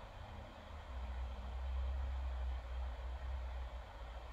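Low steady rumble with a faint hiss behind it, growing louder about a second in; background room noise with no distinct event.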